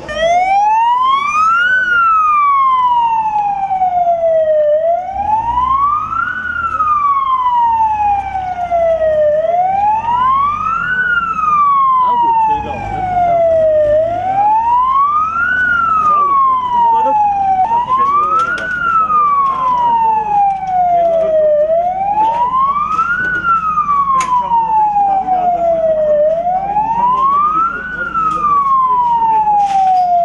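Ambulance siren wailing loudly: a slow, even rise and fall in pitch, one full sweep about every four and a half seconds, repeated over and over.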